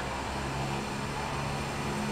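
Steady low hum of city background noise, with no distinct events.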